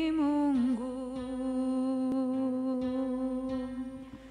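A man's voice singing a slow worship song unaccompanied, gliding down and then holding one long steady note that fades out near the end.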